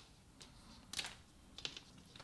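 Small hard plastic gems clicking as they are set down onto a heap of other gems, a few separate sharp clicks with the loudest about halfway through.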